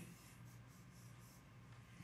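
Near silence with faint scratching of a pen writing on a whiteboard.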